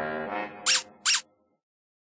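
The last held notes of a children's cartoon theme song fade out, then two short, high-pitched squeak sound effects sound about half a second apart.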